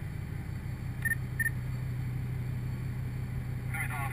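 Steady low mechanical hum of offshore drilling-rig machinery, with two short high electronic beeps a third of a second apart about a second in.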